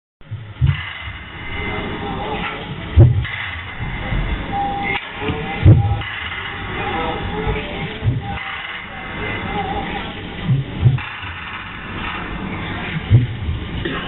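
Live improvised experimental electronic music: a dense noisy texture with a few held tones, broken by loud low thumps every two to three seconds.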